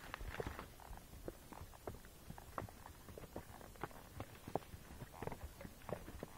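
Hooves of a Tennessee Walking Horse on a dirt trail: faint, quick footfalls about four a second, over a low rumble.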